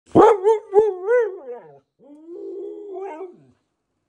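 Siberian husky "talking": a howling call that wavers up and down in pitch for under two seconds, then, after a short pause, a second, steadier call of about a second and a half that rises near its end.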